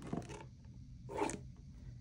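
Paper cash envelopes rustling and sliding against each other as they are flipped through and pulled from a tightly packed box: a small tap just after the start and a brief rustle about a second in.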